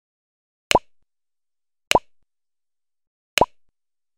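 Three short click-pop sound effects, about a second and a half apart, one for each animated press of the like, subscribe and bell buttons on the end screen. Each pop has a quick upward blip in pitch.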